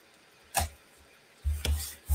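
Light handling sounds on a craft table: one sharp click about half a second in, then a couple of knocks and a low thump near the end as a metal cutting die, tools and a die-cut gold-foil piece are handled and set down.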